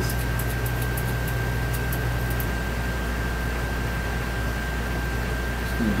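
Steady room hum and hiss with a constant high-pitched whine running under it, and a few faint ticks in the first couple of seconds.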